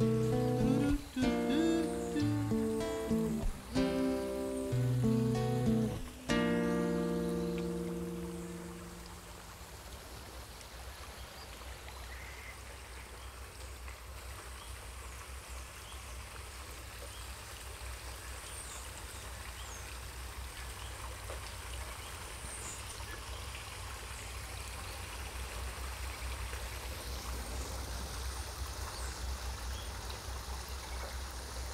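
The closing chords of an acoustic guitar song, the last chord held about six seconds in and fading out by about nine seconds. Then a steady sound of flowing stream water, with a few faint high chirps.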